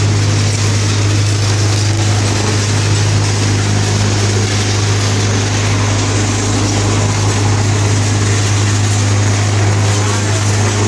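Concrete tile vibrating table running steadily, a loud constant low hum with a harsh buzz over it, as it shakes plastic moulds of wet concrete to settle the mix.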